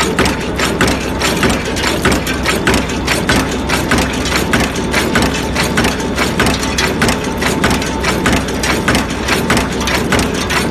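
Bearing-roller cold forging machine running at high speed: a fast, regular clatter of forming strokes over the steady low hum of its drive.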